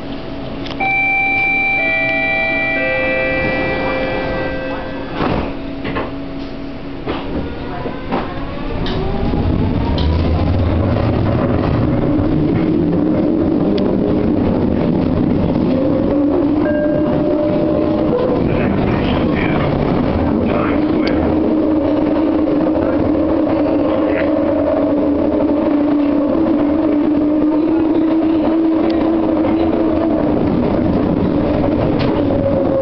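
Detroit People Mover car leaving a station: a few steady chime tones and some knocks, then from about nine seconds in a rising whine as the car accelerates on its linear induction motors. It settles into a steady, loud running noise with a hum.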